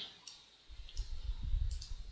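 Faint computer mouse clicks and keyboard keystrokes as a form is filled in, over a low rumble that starts about two-thirds of a second in.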